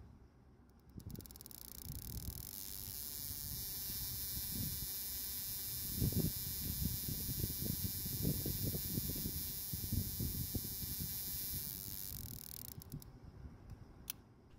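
Spark plug firing rapidly in a bench spark plug tester, a steady high-pitched buzzing that comes in about a second in and fades out near the end, with the spark rate set to about 3500 rpm. The plug sparks steadily, a sign that it works as it should. Light handling rustles and knocks from fingers on the tester's knob run underneath.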